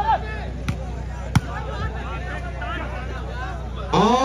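Crowd of spectators chattering and calling out around the court, with two sharp slaps of a volleyball being hit by hand less than a second apart, the second louder, and a fainter knock after them. A steady low hum runs underneath.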